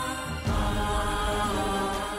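Dramatic TV-serial background score: sustained held tones with a chant-like vocal, stepping up in level about half a second in.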